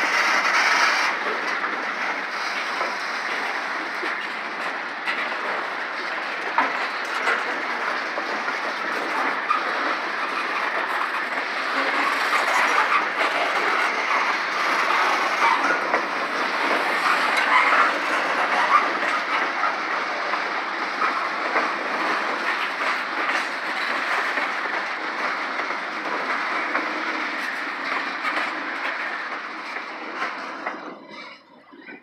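Covered hopper cars of a freight train rolling past on steel wheels, a steady rolling noise dotted with many short clicks from the wheels on the rails.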